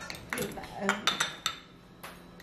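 Kitchen utensils clinking against dishes: a quick run of sharp clinks in the first second and a half, one of them ringing briefly.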